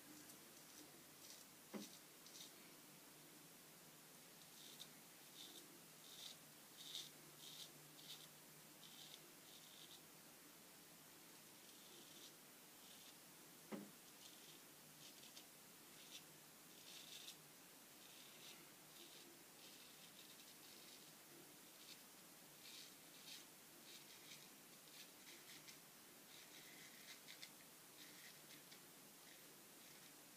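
Dovo Shavette straight razor with a Fromm blade cutting through lathered whiskers: faint, short scratchy strokes coming in quick clusters. A couple of soft knocks, the loudest about halfway through.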